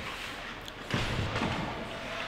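Ice hockey rink sound with a dull thud about a second in, typical of a player being checked into the boards, over the arena's steady background noise.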